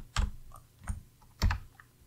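A few separate clicks of a computer keyboard and mouse as a line of query text is selected and run, two of them louder than the rest.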